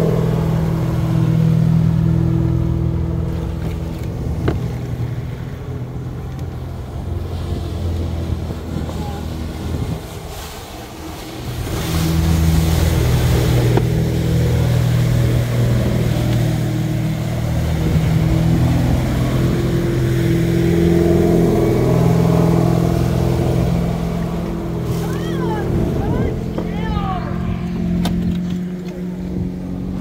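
Boat engine running at a steady speed, a deep hum that drops away briefly about ten seconds in and then returns.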